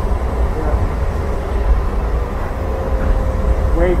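Light rail car running along the track, heard from inside the passenger cabin: a steady low rumble with a faint steady whine over it.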